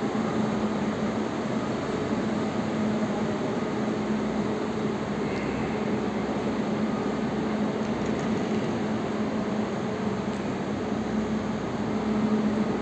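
Steady hum of electric commuter trains standing idle at the platforms, a constant low drone over an even noise.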